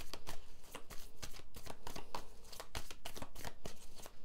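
A tarot deck being shuffled by hand: a rapid, continuous run of soft card-on-card flicks and slaps.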